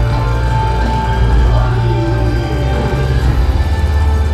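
Loud yosakoi dance music with a heavy, steady bass.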